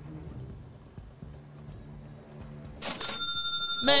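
Faint background music, then about three seconds in a stream donation-alert chime goes off: a sudden bright ring with high tones that hold until a voice comes in.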